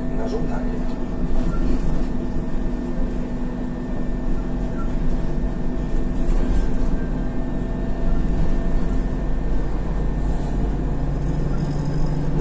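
Cabin sound of an Isuzu Novociti Life midibus driving: a steady diesel engine drone over road rumble. The engine note drops to a lower pitch near the end.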